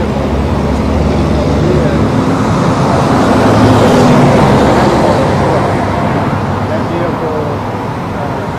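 Highway traffic: a vehicle passes, its tyre and engine noise swelling to loudest about four seconds in and then fading, over a steady low engine hum.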